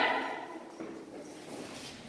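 A voice trails off in the hall's echo at the very start, followed by a quiet pause with only faint room noise.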